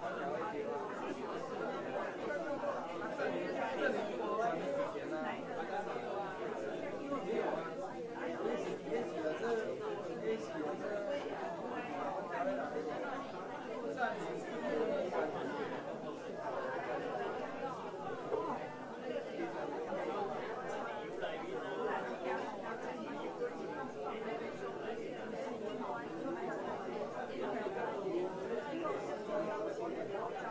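Many people talking at once in a large room: a steady hubbub of overlapping conversation, with no single voice standing out.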